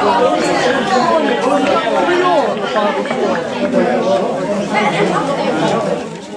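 Several football spectators chattering close by, overlapping voices with no clear words.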